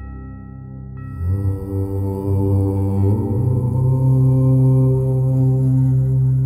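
A long chanted "Om", one low voice that begins about a second in, swells, and is held as a steady hum, over ambient meditation music. A singing bowl is struck about a second in and rings on under the chant.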